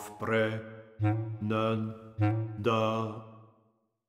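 Contemporary chamber music for baritone voice, bass flute and bass clarinet: about five short, low notes in a row, each dying away, the last fading to silence just before the end.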